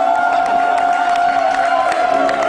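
A woman's singing voice slides up into one long held note and sustains it steadily, with audience cheering beneath it.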